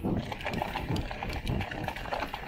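Mountain bike rolling fast over rough dirt singletrack: tyres on loose dirt with irregular knocks and rattles from the bike over the bumps.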